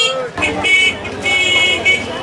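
A high-pitched vehicle horn honking twice, a short toot about half a second in and a longer one near the end, over street noise and chatter.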